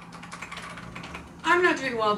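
Typing on a computer keyboard, a quick run of key clicks, followed about one and a half seconds in by a woman's voice, louder than the typing.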